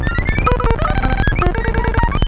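Erica Synths Pico System III modular synth playing a sequenced glitchy rhythm of rapid noise clicks under short synth notes, fed through a Charlie Foxtrot glitch pedal. A tone glides upward at the start, then short notes jump between pitches.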